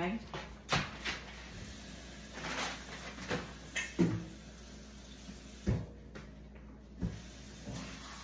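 Scattered knocks and thuds of household things being handled in a kitchen, such as a cupboard door opening and shutting, spaced a second or so apart. The sharpest knock comes about three-quarters of the way through.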